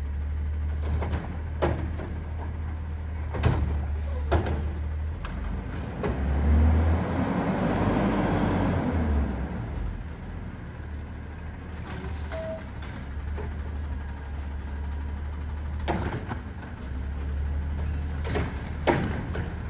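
Autocar ACX garbage truck with a Heil front-loader body and Curotto Can arm, its diesel engine running as it rolls up the street, rising then falling in pitch midway. Sharp metallic knocks and clanks come now and then, more of them near the end as the arm grabs and lifts a cart.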